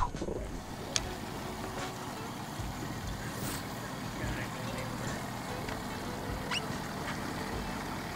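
Steady low hum of a bass boat's motor, with a single light click about a second in.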